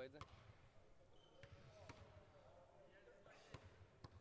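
Near silence: faint hall room tone with a few faint, sharp knocks and faint distant voices.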